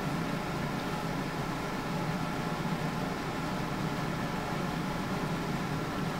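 Steady room noise: an even hum and hiss of ventilation, unchanging throughout.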